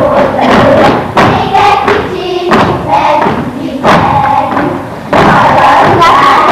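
A group of girls singing a Hungarian folk song in chorus while dancing in a circle, with their feet thudding and stamping on the wooden stage floor.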